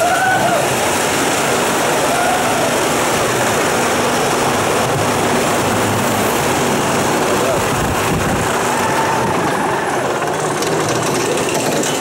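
Wild mouse roller coaster car being pulled up its lift hill: a loud, steady mechanical running noise with no breaks, and faint voices now and then.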